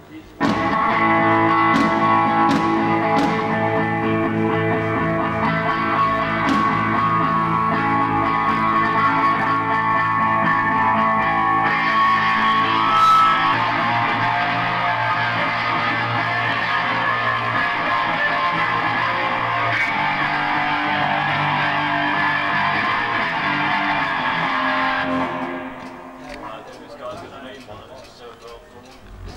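Loud fuzz-distorted electric guitar played at a band soundcheck: thick sustained chords that start abruptly about half a second in and stop about 25 seconds in, leaving voices and room noise.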